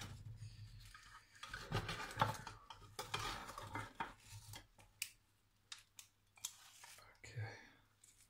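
A utensil scraping and clinking against a baking tray and a ceramic plate as a piece of banitsa is cut loose and lifted out, with a few light, sharp clicks in the second half.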